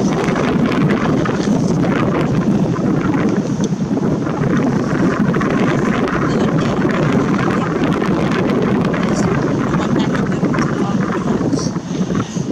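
Wind buffeting the microphone: a loud, steady rumble of wind noise.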